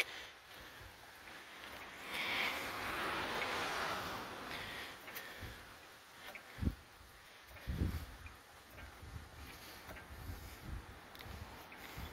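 Daytona low-profile 3-ton hydraulic floor jack being pumped by its long handle to raise a car. Faint, with a soft hiss for a few seconds from about two seconds in and a few dull low thumps about halfway through.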